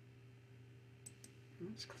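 Two quick computer mouse clicks about a second in, over a faint steady electrical hum, as the shared screen is switched between programs.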